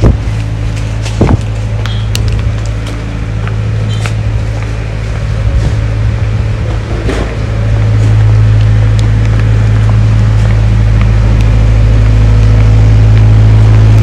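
A steady low engine hum that grows louder about halfway through, with a few scattered clicks.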